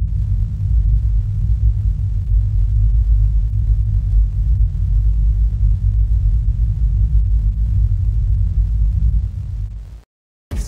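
A deep, steady rumble from the intro's sound design, with a faint hiss above it, fading out near the end.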